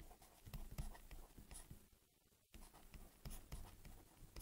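Faint light taps and scratches of a stylus writing on a tablet, in short irregular strokes.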